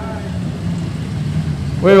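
Production sedan race car engine running steadily at low speed, a low even hum with no revving. A man's voice starts speaking near the end.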